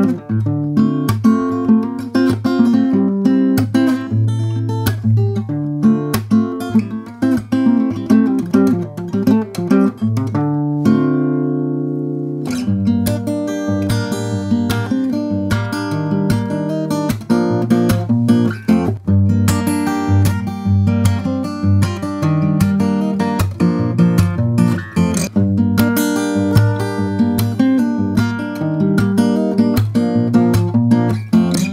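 Cort Earth-50 NS dreadnought acoustic guitar fingerpicked in a continuous passage. About eleven seconds in, a chord is left to ring out for a couple of seconds, then the picking resumes.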